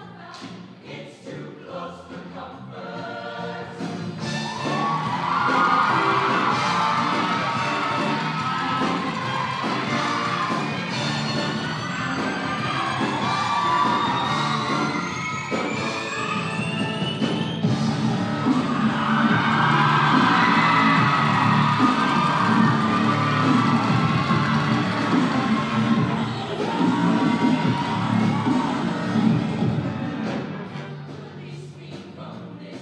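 Mixed show choir singing with instrumental accompaniment, building from quiet to full voice within the first few seconds. A rising sweep climbs over the music in the middle and cuts off suddenly.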